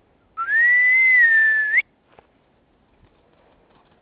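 A person whistling one long note of about a second and a half. It slides up at the start, holds, sags a little, and turns up sharply just before it stops.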